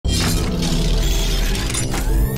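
Cinematic logo-intro music and sound effects: several bright, noisy hits over a deep, sustained low rumble, starting abruptly at the very beginning.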